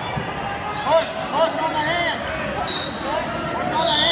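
Wrestling shoes squeaking again and again on the mat as the wrestlers scramble, with a brief high whistle tone near the end.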